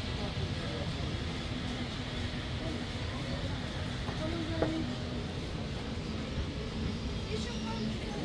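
Street ambience: indistinct chatter of passers-by over a steady low rumble, with one sharp click about four and a half seconds in.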